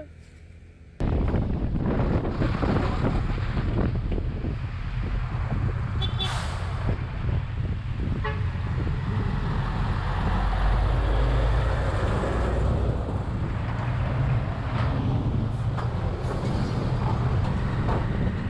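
On-board sound of a motorcycle riding among traffic: engine rumble and wind noise start abruptly about a second in, with heavy trucks passing close by. A vehicle horn toots briefly about six seconds in.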